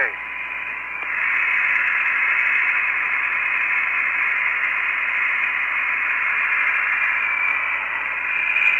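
Steady hiss of an open, band-limited space-to-ground radio voice channel with no one talking, and a faint steady tone under it. The hiss gets louder about a second in and then holds level.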